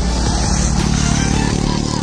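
Motorcycle engine running close by, a steady low drone.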